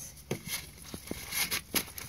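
Scissors snipping through brown paper-bag paper: about five short, sharp cuts.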